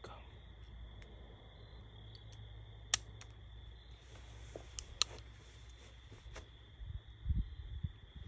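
Taurus Public Defender Poly revolver being handled before firing: two sharp clicks about three and five seconds in, with smaller ticks between. A few low bumps come near the end as the gun is raised to aim.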